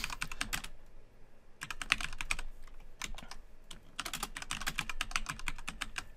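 Computer keyboard typing: quick runs of keystrokes in three or four bursts, with short pauses between them.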